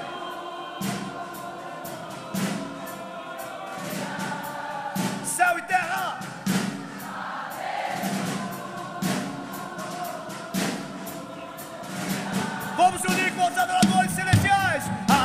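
A live gospel worship band plays with many voices singing sustained chords over a slow drum beat that hits about every one and a half seconds. A single voice sings out briefly a few seconds in and again near the end.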